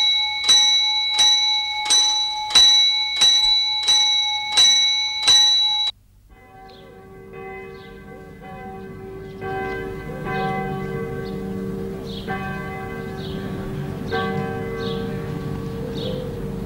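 A small grave alarm bell rung through a wire from a coffin, struck rapidly about twice a second, each stroke ringing with several steady tones; it is the signal of someone buried alive. It cuts off abruptly about six seconds in, and slow music with held chords follows and grows fuller.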